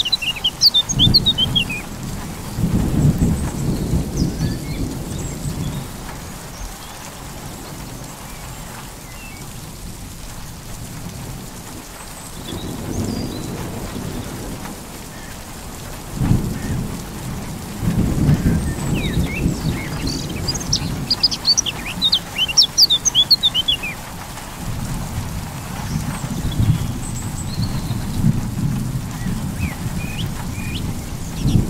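Thunder rumbling in several long rolls over steady rain. Birds chirp briefly near the start and again a little past the middle.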